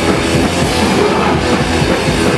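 Thrash metal band playing live at full volume: distorted electric guitars over a pounding drum kit, loud and dense.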